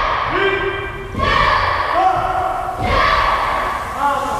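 A group of karate students shouting drill calls together as they perform techniques: long, loud shouts, a new one about every second and a half, each beginning with a thud.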